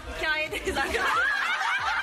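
Several women laughing and calling out excitedly together, their high voices overlapping.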